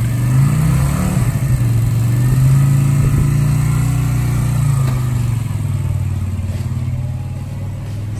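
Suzuki cruiser motorcycle engine running, with a short blip of throttle about a second in, then pulling away and fading as the bike rides off.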